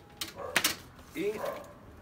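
Two brief sharp crackles, about a quarter and half a second in, from a sheet of plastic vinyl protective film and a cardboard template being handled. A short spoken word follows.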